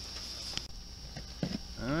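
Mostly quiet, with a steady high hiss that stops about a third of the way in and a few faint clicks. Near the end a man's voice begins a drawn-out "All right".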